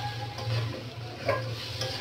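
Wooden spatula stirring chunks of sweet pumpkin in an aluminium wok, the pieces sizzling as they fry in the oil, with a few light knocks of the spatula against the pan.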